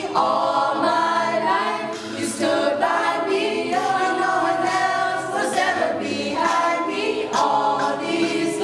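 Youth a cappella group of mixed girls' and boys' voices singing a pop song in harmony, with a live beatboxer's percussion under the voices.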